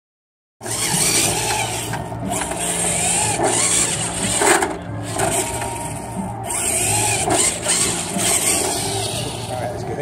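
Radio-controlled rock crawler truck's drive motor and gears whining in short bursts, starting and stopping about every second as it is throttled on and off across asphalt.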